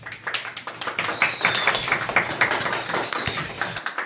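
A small group clapping, dense and uneven, as applause at the end of a story reading.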